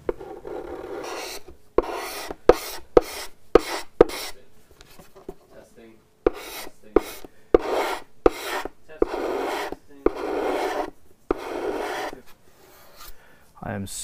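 Wood chisel scraping lacquer off a kauri guitar top: about a dozen short rasping strokes with sharp clicks between them and a pause of about two seconds midway. The finish is being stripped from the bridge position down to bare wood.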